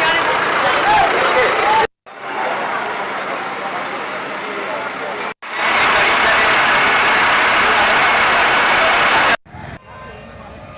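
A fire engine's motor running amid a crowd's voices, as outdoor street noise. The sound is broken by abrupt cuts about two, five and a half, and nine and a half seconds in, and is loudest after the second cut.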